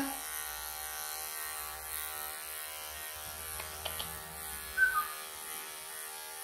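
Electric pet clippers running with a steady hum as they shave a Persian cat's matted, pelted coat. A short high note, slightly falling, sounds about five seconds in.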